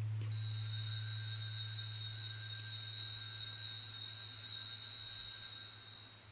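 Altar bell ringing continuously at the elevation of the chalice during the consecration at Mass. It is a steady, high-pitched ring that starts just after the start and stops shortly before the end, over a low steady hum.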